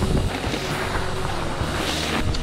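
Wind rushing on a rider-mounted camera's microphone and a mountain bike rumbling down a dirt trail, under background music.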